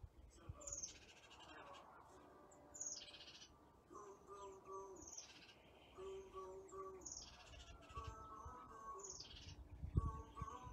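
Wild birds calling: a short, high call that falls in pitch, repeated several times a second or two apart, with soft held low tones underneath.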